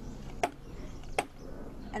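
A plastic yogurt container of wet casting-plaster mixture tapped on a table, two sharp knocks under a second apart, done to bring air bubbles up out of the mixture.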